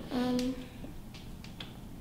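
A short hummed voice sound at the start, then a few faint light clicks from plastic syringes and tubing being handled.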